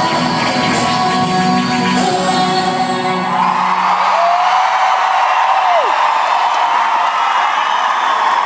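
Live hip-hop/pop concert music through an arena PA ends about three and a half seconds in, giving way to a cheering, screaming crowd. Over the crowd, one voice holds a long note that drops away after about two seconds.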